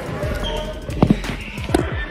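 Basketballs bouncing on a gym floor: two sharp bounces about a second in and another near the end, over background voices.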